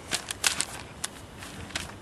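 Paper pages of a spiral notebook being flipped and handled: a scattered run of short, crisp rustles and crackles.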